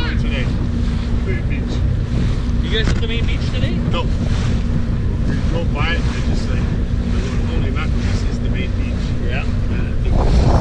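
Motorboat engine running steadily at cruising speed, a constant low drone, with wind buffeting the microphone and water rushing along the hull.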